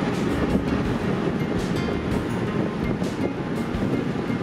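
Steady road and wind noise inside a moving pickup truck's cab.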